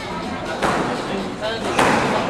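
Squash ball being struck in a squash court: two sharp smacks about a second apart, each ringing briefly off the court walls, as a rally gets under way.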